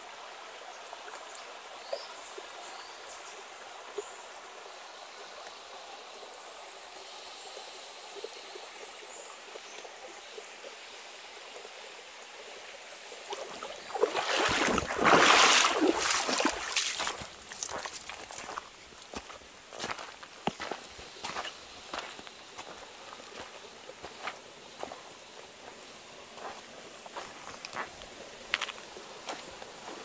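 Shallow stream running over stones, a steady trickling hiss. About 14 seconds in, feet splash through the water for a few seconds, the loudest part; after that, footsteps crackle and tick on dry leaf litter over the fainter sound of the water.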